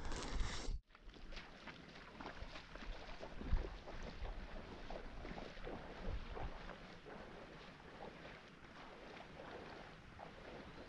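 Small waves lapping at the water's edge with wind buffeting the microphone, in low gusts about three and a half and six seconds in. A brief rustle of handling is cut off abruptly in the first second.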